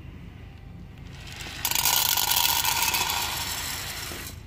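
Soybeans poured from a bowl into the metal test cylinder of a grain moisture meter: a steady rattling pour that starts suddenly about a second and a half in and slowly fades.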